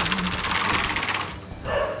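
Pleated mesh insect-screen door sliding along its track: a fast, even rattle of clicks for about a second and a half that then dies away.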